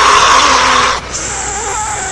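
A man's loud, hoarse, hissing yell without words, lasting about a second, then a thin high-pitched whine that holds steady to the end.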